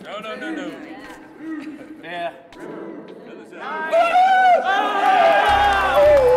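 Voices talking around a poker table, then from about four seconds in a much louder, long, drawn-out vocal sound takes over.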